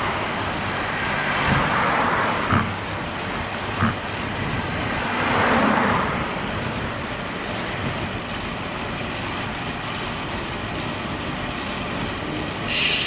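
Steady wind rush on an action camera carried on a moving road bike, with an oncoming car swelling past about five to six seconds in. Two short knocks come a few seconds in.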